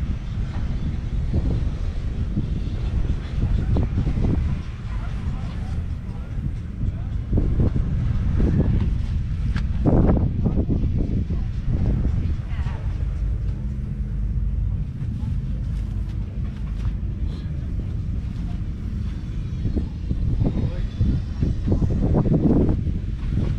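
Massey Ferguson 135's 2.5-litre three-cylinder diesel engine running steadily, with voices talking over it.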